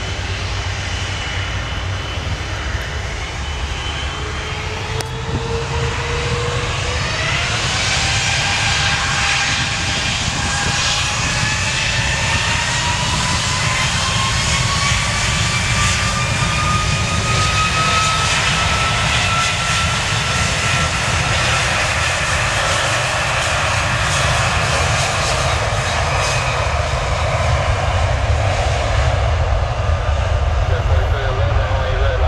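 Jet engines of a cargo jet spooling up: a whine that rises steadily in pitch for about fifteen seconds and then holds, over a low rumble that grows louder.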